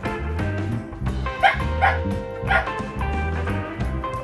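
A Shetland Sheepdog puppy yips three short times about halfway through, over steady background music.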